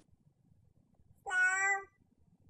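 A dog gives one short, steady-pitched whine, about half a second long, a bit over a second in, begging for a person's food.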